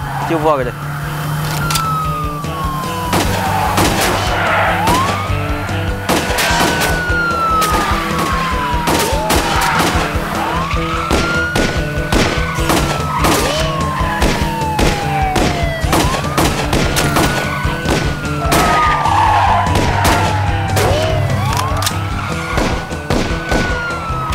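Police car siren wailing, a quick rise and a slow fall repeating about every five to six seconds, over a tense drama score with steady low notes and many sharp percussive hits.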